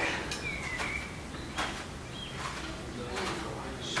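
Soft rustles and light taps, about six spread over a few seconds, from rubber resistance bands and clothing as bands are passed from hand to hand around the hips. A brief faint high squeak comes about half a second in.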